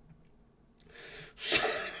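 A short pause, then a man's breathy huff of air about one and a half seconds in, the start of a laugh.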